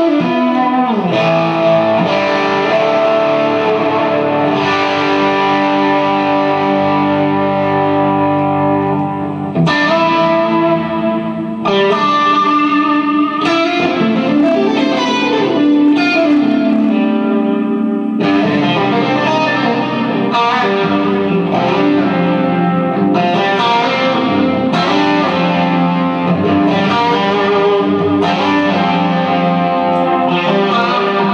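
Telecaster-style electric guitar played through an effects pedalboard and amplifier: sustained, ringing chords with effects, struck afresh every second or two, with brief dips in level about ten and twelve seconds in.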